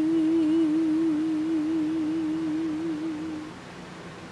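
A woman's unaccompanied voice holds one long lullaby note with a steady, even vibrato, ending about three and a half seconds in. Underneath, a fan gives a constant white-noise hiss.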